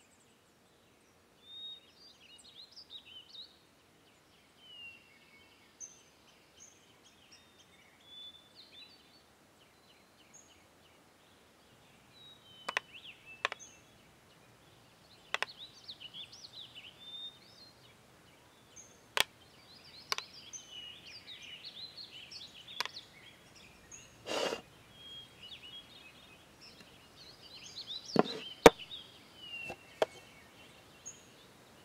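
Small birds chirping and twittering in short scattered calls throughout. From about twelve seconds in, a handful of sharp clicks and knocks come at irregular intervals, the longest a duller knock a little past the middle.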